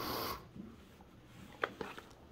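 A short rustle as the cardboard hobby box is handled on a cloth-covered surface after being slit open, then a faint click about a second and a half in.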